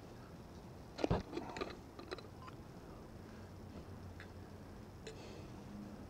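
A sharp knock about a second in, then a quick string of light clicks and rattles, with a few faint ticks later: a metal lid being worked loose and lifted off a glass olive jar.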